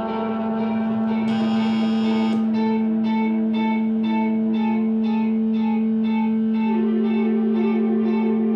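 Live experimental music on electric guitars run through effects pedals: a steady low drone under a looping pulsed figure of about two pulses a second. A brighter high sound joins briefly about a second in.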